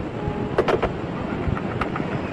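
Recorded 911 phone call with nobody talking on the line: steady hiss and low rumble broken by a few sharp clicks and knocks, while the child caller is away from the phone locking the front door.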